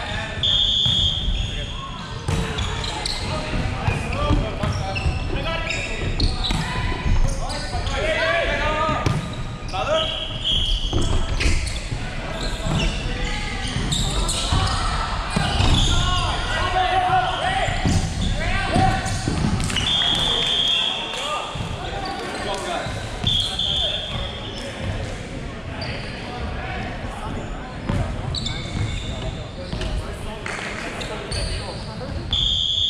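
Indoor volleyball play in a large, echoing hall: players shouting calls, the ball being struck, and a few short, shrill whistle blasts.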